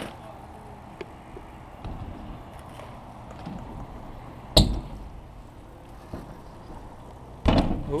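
BMX bike tyres rolling on a concrete skatepark with a low steady rumble, and one loud landing thud a little past halfway as the rider comes down from a jump over a ramp.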